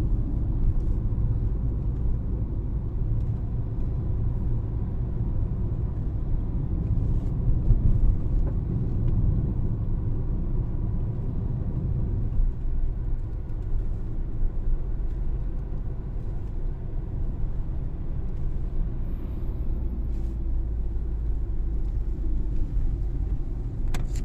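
Steady low rumble of a car driving along a paved road, engine and tyre noise heard from inside the cabin, swelling slightly for a moment about a third of the way in.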